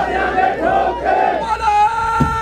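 A crowd of voices shouting a slogan together over a steady held tone.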